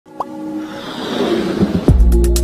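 Electronic intro music for a logo animation. A short rising plop comes near the start, then a swell builds up to a deep bass hit just before the end.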